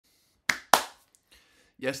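A person's hands making two sharp snaps about a quarter of a second apart, each dying away quickly.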